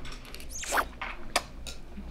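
A person slurping wide, thick glass noodles (dangmyeon) off chopsticks, in a few short wet sucking slurps.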